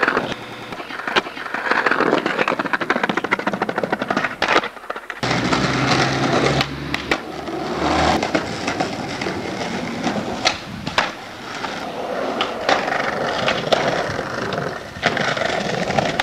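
Skateboard rolling on hard ground, with repeated sharp clacks and impacts of the board. A low hum joins in about five seconds in and lasts about three seconds.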